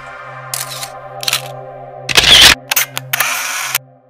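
Logo sting sound design: a held electronic chord under a string of short hissing, click-like bursts, the loudest and longest a little after two seconds in. Everything cuts off abruptly just before the end.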